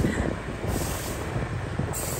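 Steady vehicle and road noise from travelling along a city street, a low rumble under a hiss that swells for about a second in the middle.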